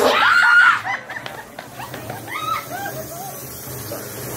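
A person screams loudly and high-pitched for under a second, then lets out a run of shorter, quieter high cries, with a low hum of crowd and background noise underneath.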